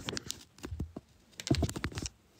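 Quick runs of sharp clicks and taps with a few dull thumps, in two clusters near the start and near the end, as small objects are handled close to the microphone.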